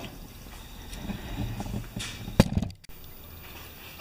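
Faint handling rustle with one sharp click a little past halfway, then a steady low room hum.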